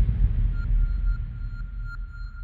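Logo-intro sound effect: a deep rumble fading away, with a thin, steady high ringing tone that comes in about half a second in and carries a few faint ticks.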